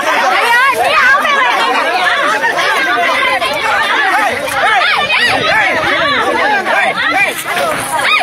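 A crowd of men and women shouting and arguing over one another, loud and without a break.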